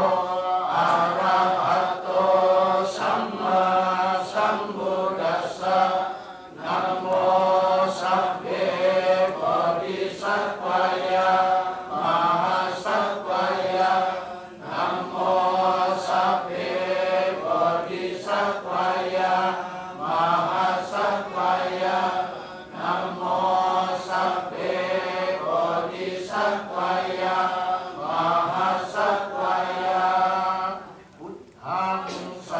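A group of Theravada Buddhist monks chanting Pali paritta together in a steady recitation, led by a senior monk on a microphone. The chant runs in phrases of a couple of seconds, with short breaths between them and slightly longer pauses about six, fourteen and twenty-two seconds in.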